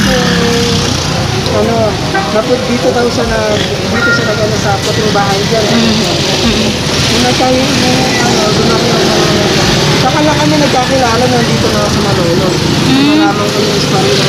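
A man talking continuously, with street traffic going by behind him.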